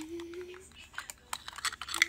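Quick, irregular plastic clicks and taps from a toy garbage truck and its small trash cart as they are handled and loaded with bits of trash. A steady low tone runs under the start and fades out about half a second in.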